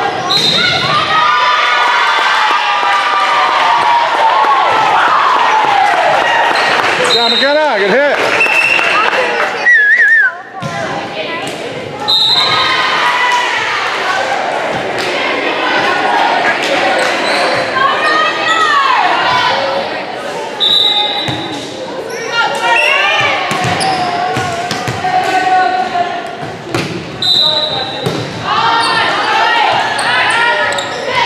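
Volleyball play on a hardwood gym court: the ball is struck and lands with sharp smacks, and athletic shoes squeak on the floor. Players and spectators talk and call out throughout, all echoing in the large gym.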